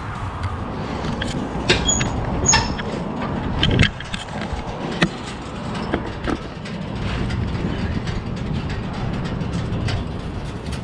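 Scattered clicks and knocks of handling close to the microphone over a low steady rumble, as a hand moves along and touches a motorcycle's rear tyre.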